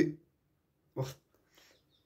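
A young man's voice in hesitant speech: a word trails off just after the start, then a single short voiced sound about a second in, with near silence between.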